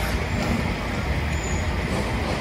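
Steady outdoor background noise with a low rumble, no single distinct event.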